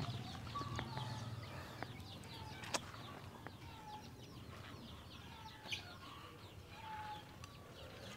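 Chickens clucking faintly among many short, high chirps, with two sharp clicks, one about three seconds in and one near six seconds.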